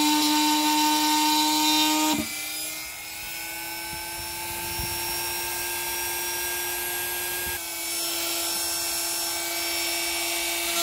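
Handheld electric rotary tool running with a steady high whine, its bit grinding grooves into the metal hub bore of a vending-machine vend-motor gear. About two seconds in the load comes off: the whine drops in loudness and rises slightly in pitch as the tool runs on freely.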